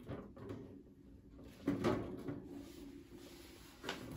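Flimsy wire top of a Ferplast Favola hamster cage knocking and rattling lightly against its plastic base as it is fitted on and straightened, a few short knocks with the loudest about two seconds in.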